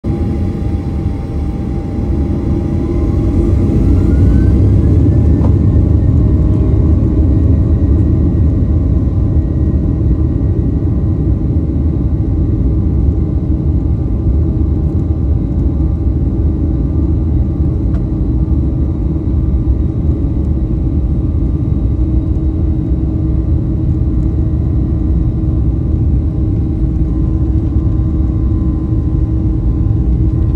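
Airliner's jet engines spooling up to takeoff thrust: a whine rises in pitch over a few seconds as the sound grows louder, then settles into a steady loud rumble of the takeoff roll, heard from inside the cabin.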